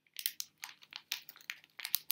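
Crinkly candy bag crinkling in a quick, irregular run of crackles as it is handled.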